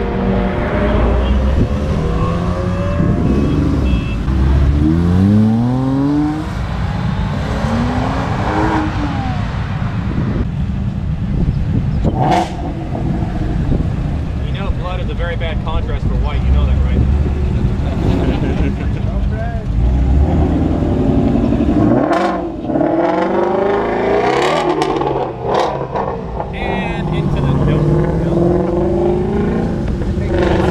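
Several sports and muscle cars accelerating hard away from the curb, one after another, their engines revving up in rising sweeps through the gears, with low engine rumble between the pulls.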